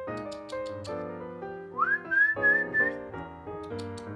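A person whistling a single rising note that is held for about a second, calling a puppy, over background music.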